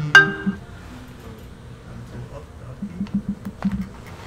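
The last note of an electronic phone ringtone melody, ending about half a second in. After it comes quiet room sound with a few light clicks.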